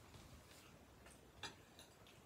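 Near silence, broken by a few faint, short clicks, the clearest about one and a half seconds in.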